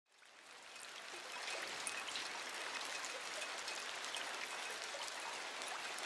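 A water sound effect: a steady hiss of running water flecked with scattered tiny ticks, fading in over the first second and a half.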